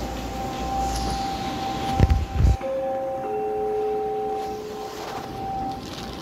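Two-note test chime from a wall monitor's speaker, sent as an audio test from a CCTV network video recorder: a higher tone steps down to a lower one held for about a second and a half, starting about two and a half seconds in. A low thump comes just before it, over a steady faint high tone.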